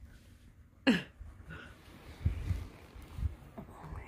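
A single short cough-like sound from a person about a second in, falling sharply in pitch, then a few soft low thumps and rustles of the bedding and phone being handled.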